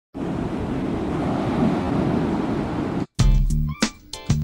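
Steady rush of ocean surf for about three seconds, cut off suddenly; a hip-hop beat then starts with heavy bass and sharp drum hits.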